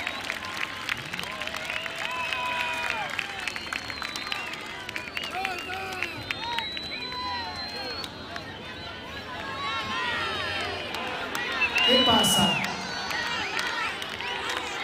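A large crowd cheering and shouting, many voices overlapping, with scattered clapping; one louder shout comes about twelve seconds in.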